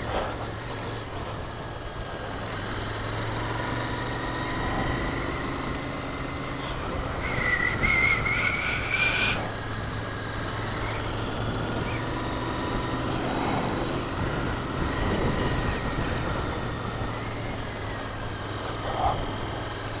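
Motorcycle engine running steadily at cruising speed, heard from on the bike with wind noise. A higher whine rises slightly for a couple of seconds about halfway through.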